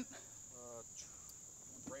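Faint, steady high-pitched chorus of insects chirping.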